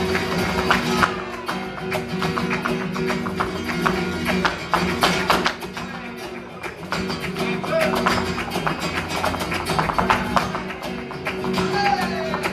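Live flamenco: three flamenco guitars playing chords, with many quick, sharp percussive taps throughout from the dancer's heeled shoes striking the stage.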